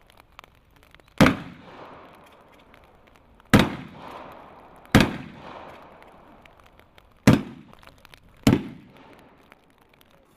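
Five loud bangs, unevenly spaced over several seconds, each followed by a short echo: a hand breaching tool being swung hard against a steel door.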